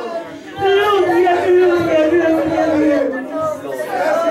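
A woman's voice over a microphone, tearful and drawn out into long wavering tones with no clear words, as she weeps and prays.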